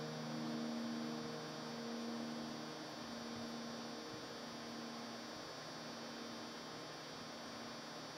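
The last held chord of an electric piano fades away over the first few seconds, leaving a steady electrical mains hum with a faint high whine from the amplified keyboard setup.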